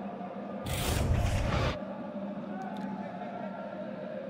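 Faint background sound of a televised soccer match, with a loud rush of noise lasting about a second, starting just under a second in.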